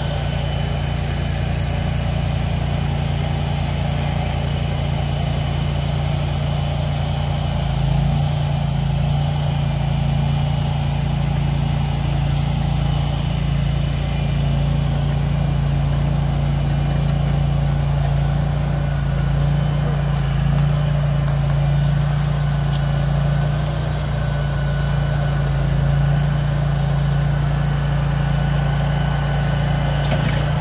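Delivery truck's engine running steadily while the cabin is moved into place; about eight seconds in it speeds up a little and then holds that pitch.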